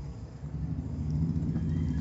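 Steady low background hum, growing somewhat louder through the second half.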